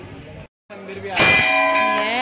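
A metal bell struck once about a second in, ringing on with several steady tones.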